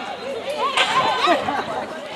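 Several high-pitched young voices shouting and calling out over one another during a netball game, loudest about a second in.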